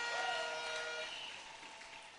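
A large crowd clapping and cheering, dying away, with a few faint steady tones held beneath.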